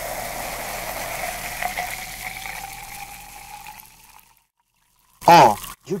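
A dark carbonated soft drink poured into a glass jar, the stream splashing and the foam fizzing, with a faint tone that rises slowly in pitch as the jar fills. It fades away about four seconds in.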